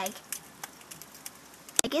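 Quiet background noise with a few faint scattered ticks, then one sharp click near the end.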